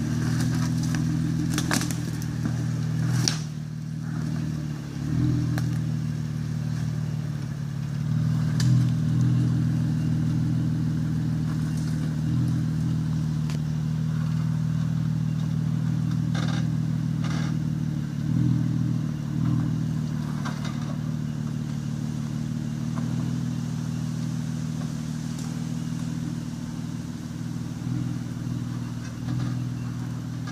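Jeep Wrangler engine running steadily at low revs as the vehicle crawls up a rocky track, with scattered short knocks and crackles from tyres and chassis on the rock.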